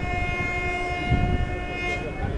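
A train horn sounds one long steady blast of about two seconds, a chord of several tones. Beneath it runs the rumble and clatter of the wheels of a moving passenger coach.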